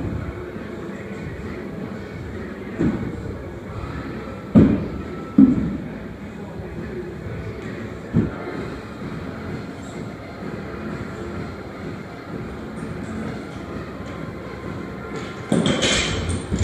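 Feet landing on wooden plyo boxes during box jumps: four dull thuds a second or few apart, the second and third loudest, over a steady rumble of gym noise. Near the end comes a louder knock and clatter.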